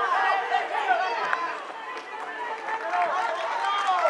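Several voices shouting and calling over one another from around a football pitch during play.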